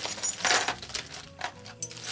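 A plastic zip-lock bag rustling as it is handled and opened, with small metal purse hardware such as brass rings and clasps clinking inside. A few sharp, ringing metal clinks come in the second half.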